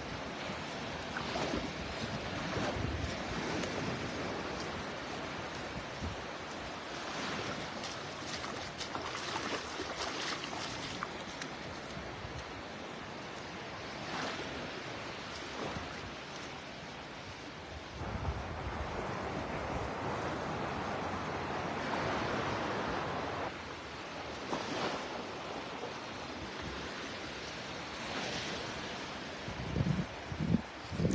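Small waves breaking and washing up on a sandy beach, with wind buffeting the microphone. The surf rises and falls in swells, with a louder stretch a little past halfway.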